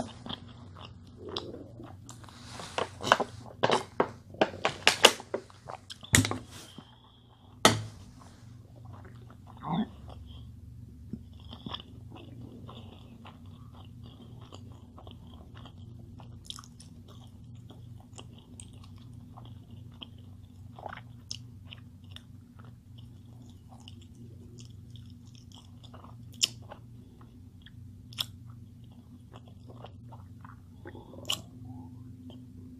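A person eating a burger close to the microphone, with chewing and biting. The first eight seconds hold a run of loud crinkly clicks and crackles; after that the chewing clicks are sparse and faint over a steady low hum.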